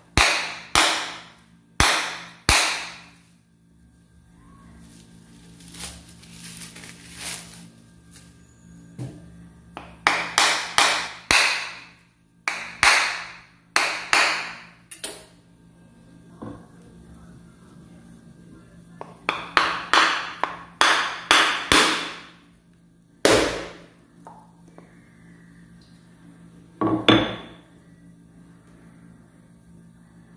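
A dry coconut with no water inside, its shell struck again and again to crack it open, first with the back of a knife and then with a wooden rolling pin. The sharp blows come in bursts with pauses between them, and the last two land singly near the end.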